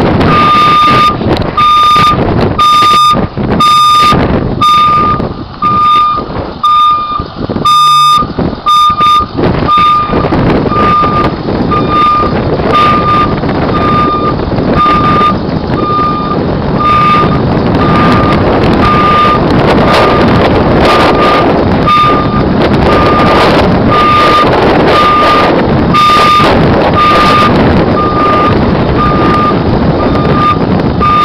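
Ambulance reversing alarm beeping about once a second in a steady single tone, over a loud, constant rushing noise.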